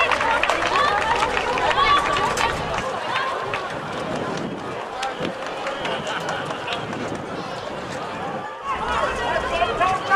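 Women's voices shouting and calling across an outdoor field hockey pitch, with crowd chatter and a few sharp clicks; the sound breaks briefly near the end.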